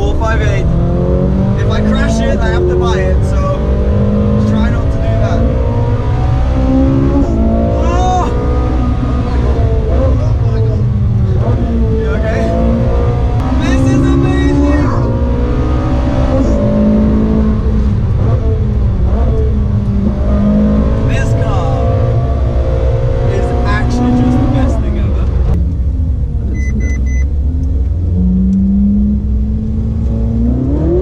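Ferrari 458 Spider's 4.5-litre V8 heard from inside the cabin at track speed. It revs up through the gears and drops back again and again, over a heavy, steady rumble of road and wind noise.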